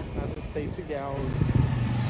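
Small motorcycle engine running as it comes closer, its low hum growing louder in the second half.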